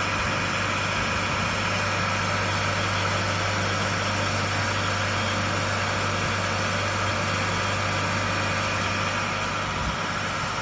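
Ten-spindle high-speed coil winding machine running steadily, winding wire onto shaded-pole motor stators: an even mechanical whir over a steady low hum.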